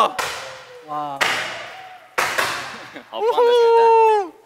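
Confetti cannons going off, two sharp bangs about two seconds apart, each trailing off in a hiss over about a second. Voices call out between them, and a long held 'ah' follows near the end.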